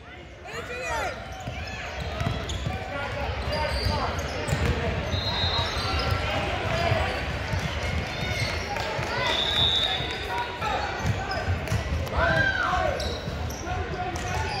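Basketball game sounds on a gym's hardwood court: the ball bouncing and a few short high sneaker squeaks, under a steady background of players' and spectators' voices.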